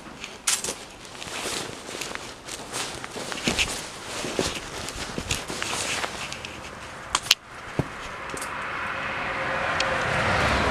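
Footsteps and scattered clicks and knocks of handling while walking in the dark, with a sharp knock about seven seconds in. A steady noise builds over the last couple of seconds.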